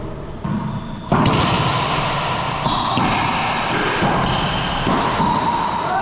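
Racquetball doubles rally in an enclosed court. The ball is bounced for the serve, then struck hard about a second in, followed by repeated sharp hits off racquets and walls with heavy echo. Sneakers squeak on the hardwood floor.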